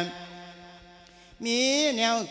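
A Thai monk's voice chanting an Isan sung sermon (thet lae) into a microphone. A held note ends at the very start, there is a breath pause of about a second, and then the voice comes back near the end on a note that rises and then falls.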